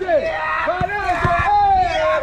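High children's voices shouting and calling out over one another, without a break.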